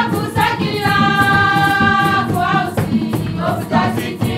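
Music: a choir singing, with one long held note in the middle, over an accompaniment with a steady beat.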